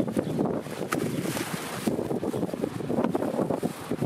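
Wind buffeting the microphone, with plastic bags rustling and crinkling as they are handled.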